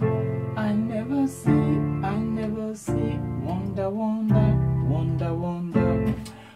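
Yamaha PSR-530 electronic keyboard playing sustained two-handed block chords of a highlife progression in F, with the left hand doubling the right. The chord changes about every second and a half, and the low end sounds a bit muddy.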